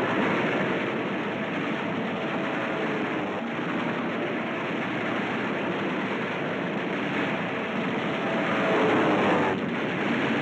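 Steady drone of a WWII warplane's piston engine in flight, a dense, even noise on an old film soundtrack. It dips briefly near the end.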